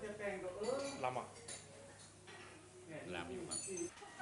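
Voices talking, with a few light, high clinks of cafe tableware, one about a second in and another near the end.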